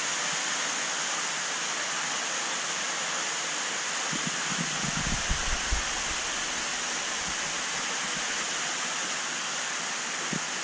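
Steady rush of splashing water from a large aquarium's filtration, with a few low thumps about five seconds in.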